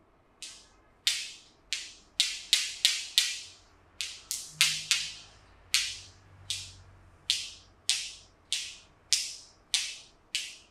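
Sharp snapping clicks, irregularly spaced at about two a second, made by fingertips pinching and flicking the skin of the face during a face massage.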